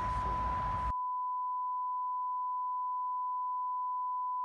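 Steady test-card tone: one pure, unwavering beep at about 1 kHz. The outdoor background noise under it cuts off abruptly about a second in, leaving only the tone.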